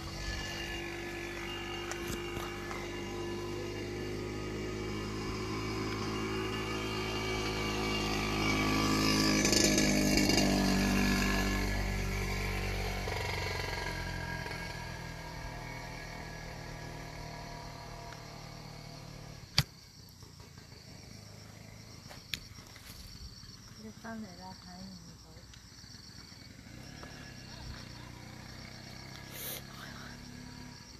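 A motor vehicle's engine passing by: it grows louder to a peak about ten seconds in, its pitch falling as it goes past, then fades away. A sharp click follows a few seconds later, and a voice says a few words near the end.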